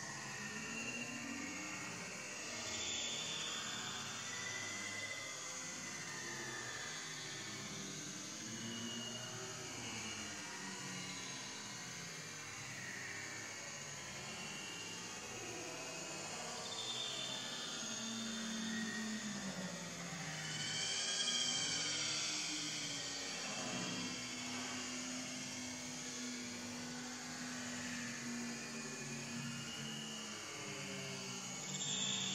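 Baby pig-tailed macaque crying in short, faint, high squeals while clinging to its mother, over a steady outdoor hiss; the calls come more often and a little louder about two-thirds of the way through.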